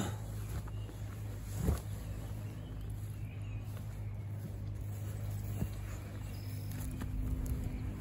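Rustling and scuffing of a person working bent over in a narrow dirt hole, over a steady low hum, with one short thump or grunt about two seconds in.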